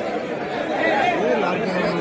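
A crowd of many voices talking and calling out at once.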